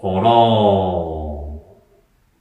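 A man's voice drawing out one long sing-song word, "korōn", lasting about a second and a half, its pitch slowly falling.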